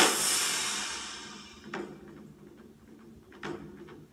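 Movie trailer soundtrack: a sudden crash that dies away over about a second and a half, then two faint knocks about a second and a half apart.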